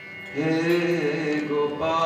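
Kirtan chanting: a sung devotional line over a sustained harmonium, the singing coming in about half a second in and breaking briefly just before the end.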